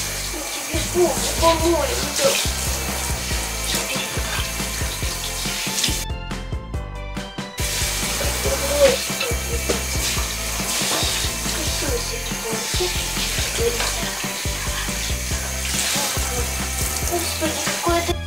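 Water running from a handheld shower head onto a wet cat in a bathtub, a steady spraying hiss with a short break about six seconds in. Background music plays underneath.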